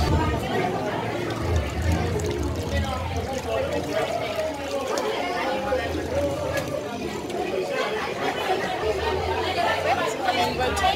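Indistinct chatter of several people in a busy room over a steady low hum. About halfway through, water is poured from a jug and splashes into a metal basin.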